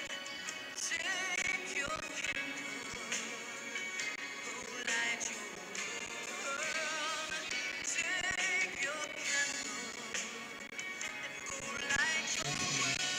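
A song: a singing voice with vibrato over instrumental accompaniment.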